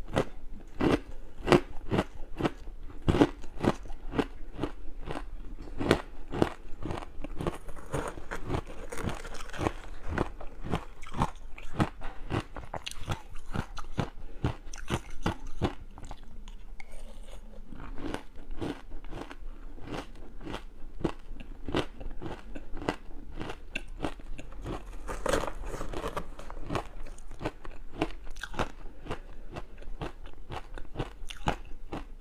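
Close-miked chewing of powdery frozen ice coated in matcha powder: a steady run of sharp crunches, two or three a second, a little louder in the first few seconds.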